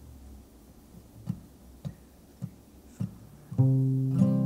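Four soft taps at a steady pace, about two every second and a bit, counting in. Then an acoustic guitar chord is strummed about three and a half seconds in and left ringing.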